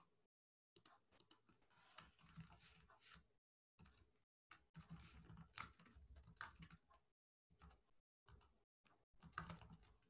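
Near silence with faint, irregular computer keyboard typing and clicks, broken several times by brief stretches of dead silence.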